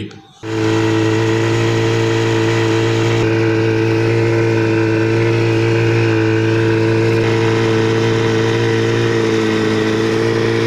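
Outboard motor of an inflatable rescue boat running steadily at speed, a constant drone that starts about half a second in and holds an even pitch throughout.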